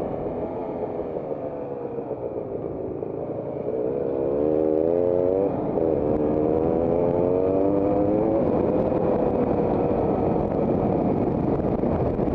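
Motorcycle engine heard from the riding bike over a rushing noise. The engine note sags at first, then rises hard from about four seconds in, breaks briefly about five and a half seconds in for a gear change, and rises again before settling.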